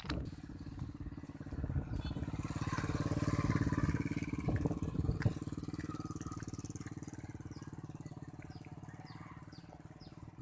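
Motorcycle engine passing close by. It grows louder over the first few seconds, then fades slowly as the bike rides away.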